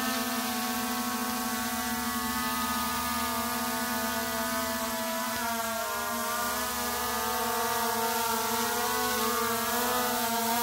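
Small quadcopter drone's propellers whining steadily as it descends to land. Its pitch wavers and dips briefly about halfway through.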